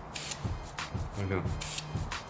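Two short hisses from an aerosol spray-paint can, one near the start and one near the end, mixed with the rubbing crunch of scissors cutting into spray-painted upholstery foam.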